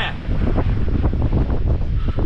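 Strong wind buffeting the microphone in uneven gusts of low rumble, with breaking surf behind it.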